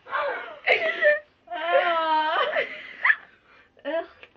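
A girl's wordless moaning and whining: a few short cries, then one long drawn-out moan in the middle, then a brief yelp.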